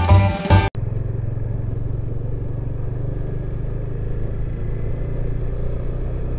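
A banjo tune cuts off suddenly under a second in, followed by a motorcycle engine running at a steady, even low hum while riding.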